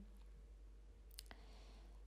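Near silence: faint room tone, with two faint clicks a little over a second in.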